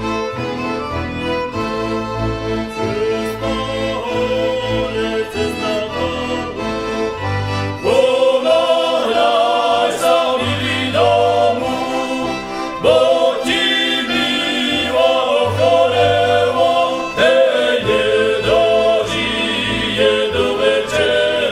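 Central European folk music recording, continuous and pitched, becoming fuller and louder about eight seconds in.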